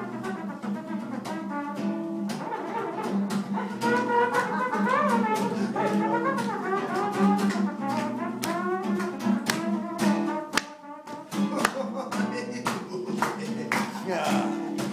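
Live acoustic guitar strummed in a steady rhythm while a man's voice carries a melody without clear words into the microphone; the sound briefly drops back about ten seconds in.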